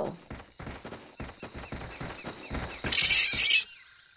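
Cartoon sound effect of quick running footsteps, about four or five steps a second, followed near the end by a brief hissing swish.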